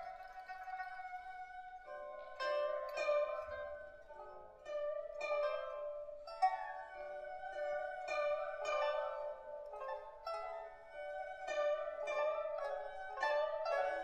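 Erhu, pipa and guzheng trio playing a slow, lyrical passage: plucked notes sound every half second to a second and ring on over a held bowed melody.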